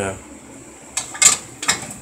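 Three sharp knocks and clacks from handling a ridged grill skillet, starting about a second in, the middle one the loudest.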